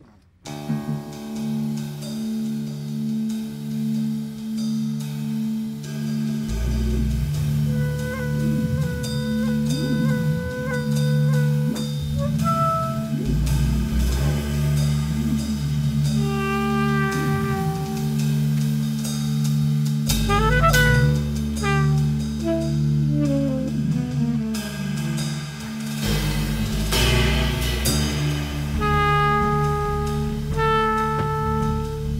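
Jazz quartet playing live: pulsing keyboard chords open the piece, electric bass comes in about six seconds in, and drums and a tenor saxophone melody join above them.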